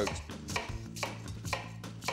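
Chef's knife slicing through a halved onion and tapping the cutting board, with several crisp cuts about two a second.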